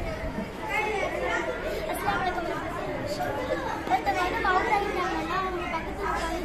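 Chatter of several voices talking at once, unclear and overlapping, in a large room.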